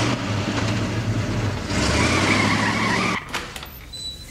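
Car engine running as a convertible drives, joined about halfway by a wavering tyre squeal. Both cut off suddenly near the end.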